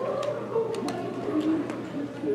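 Sharp clicks and slaps of a drill rifle being caught and handled, a few times over two seconds, over a murmur of crowd chatter.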